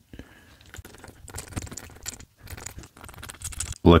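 Cotton swab scrubbing inside the plastic section of a TWSBI Eco fountain pen to lift a stubborn blue ink stain: faint irregular scratching and small clicks of plastic being handled.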